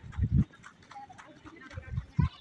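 A horse walking on dry dirt, with two low hoof thuds, one about a quarter-second in and one at the very end, and faint voices in the background.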